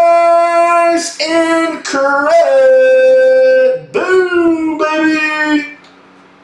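A voice singing a string of long, held notes, each sliding up into its pitch, loud and celebratory after a $500 hit; it stops shortly before the end.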